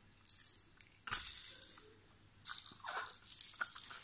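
Plastic baby rattle shaken in four short bursts, its beads rattling, with short pauses between.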